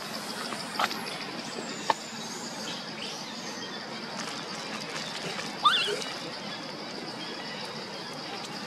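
Outdoor ambience with a steady high-pitched drone. Two small clicks come early, and a short, loud, squeaky chirp sounds a little past halfway.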